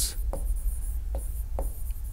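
Marker pen writing on a whiteboard: scratchy strokes in short stretches, with three short taps as the tip meets the board.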